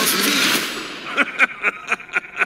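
A trailer song ends on a held sung word and its full mix fades within the first second. A run of short, sharp, irregular clicks follows, about four or five in the last second.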